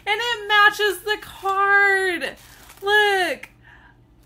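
A woman's high-pitched, wordless squeals of excitement: four in a row, the longest held about a second, each sliding down in pitch at its end.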